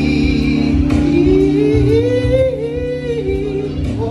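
A man singing into a handheld microphone over a backing music track, drawing out one long wordless note that rises about a second in and wavers before easing off near the end.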